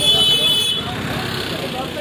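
A vehicle horn sounding in one steady, high-pitched blast that stops less than a second in, over street traffic noise and the low running of engines.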